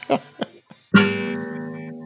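A single guitar chord strummed about a second in, ringing out and fading for about a second and a half before it stops.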